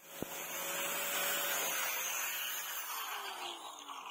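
Small electric angle grinder with a sanding disc sanding a wooden knife-handle scale: a steady hiss of abrasive on wood over the motor's whine. Near the end the motor's pitch falls as it winds down.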